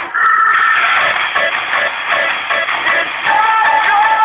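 Electric guitar playing rock music: a fast, even rhythm of strokes, with held high notes at the start and again near the end.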